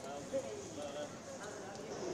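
Faint airport-terminal crowd ambience: distant voices chattering, with one short knock about a third of a second in.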